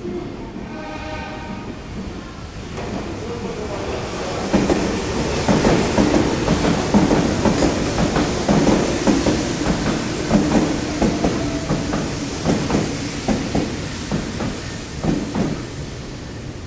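Meitetsu 1230 series electric train running into the station, its wheels clattering in quick succession over points and rail joints. The clatter builds about four seconds in, is loudest a few seconds later, then fades as the train moves away. Near the start there is a brief pitched tone.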